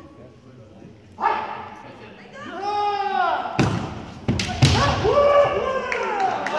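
Kendo kiai: fighters' long drawn-out shouts, then from about three and a half seconds in several sharp knocks of bamboo shinai and stamping feet on a wooden floor, with more shouting over them.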